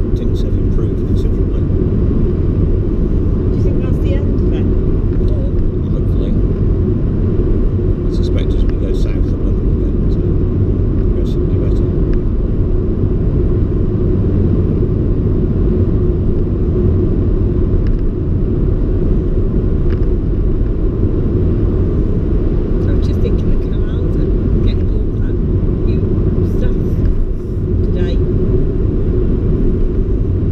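Steady low rumble of tyres and engine inside a moving car's cabin at cruising speed.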